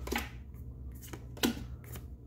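Trading cards being slid one at a time from the front of a hand-held stack to the back: about four short papery swishes in two seconds, over a faint steady low hum.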